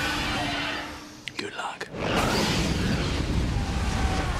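Movie-trailer sound effects: a dragon's breathy roar, a brief lull with a few clicks, then a loud rush of fire from about halfway through.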